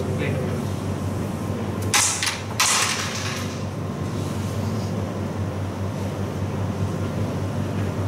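Carrom break shot: the striker smashes into the packed cluster of wooden carrom men with two sharp cracks under a second apart about two seconds in, then a short clatter as the pieces scatter across the board. A steady low hum sits underneath.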